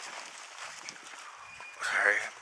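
Quiet outdoor background noise, with a brief faint high tone about a second and a half in; a man's voice starts just before the end.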